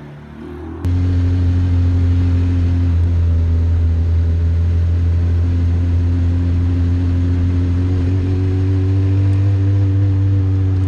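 Peel P50 microcar's tiny engine running steadily under way, heard from inside the cabin. A loud, constant drone cuts in abruptly about a second in, and its pitch creeps up slightly near the end.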